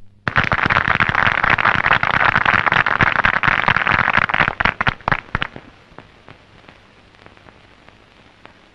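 Audience applauding, thinning to scattered claps and dying away about five seconds in.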